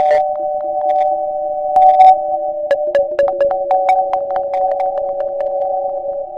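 Electronic music: a sustained synthesizer drone of a few steady tones, overlaid by irregular sharp clicks and ticks.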